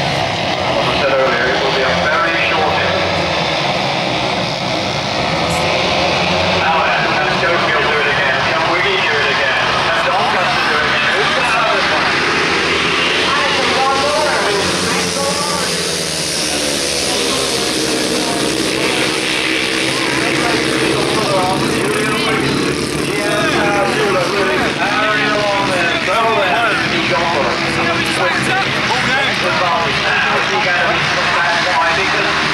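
Several grasstrack solo racing motorcycles running hard together, their single-cylinder engines rising and falling in pitch as the riders race round the oval and sweep past.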